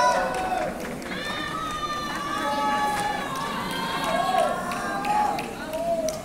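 Several people shouting and calling out at once, in long, drawn-out calls that overlap, with a few sharp clicks in between.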